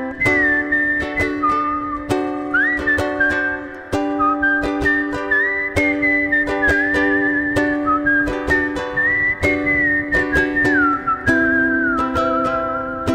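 Ukulele strummed steadily through D, G and Cmaj7 chords, with a whistled melody over it that slides up and down between notes and wavers on the held notes.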